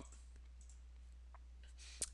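Near silence: a steady low electrical hum, with a faint computer mouse click.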